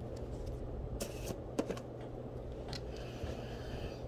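Light handling and scraping sounds with a few small clicks, as a tub of soft shave soap is opened and worked by hand, over a low steady hum.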